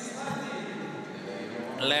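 Indoor swimming-arena ambience: a steady bed of held tones over an even crowd-and-hall murmur. A man's voice starts near the end.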